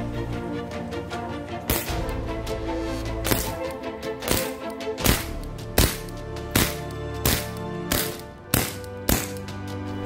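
Umarex Beretta 92FS non-blowback CO2 pellet pistol in .177 firing a string of about eight sharp shots, roughly a second apart, starting a couple of seconds in. Background music plays under the shots.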